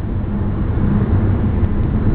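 Steady low rumble of a car driving at speed, heard inside the cabin: engine and tyre noise on the road.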